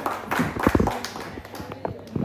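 A small group of people clapping: a short round of applause, with a voice or two over it.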